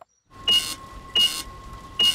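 Telephone line after a number has been dialled, waiting to connect: a steady hiss with a faint thin tone under it, and two short bursts about a second in and near the end.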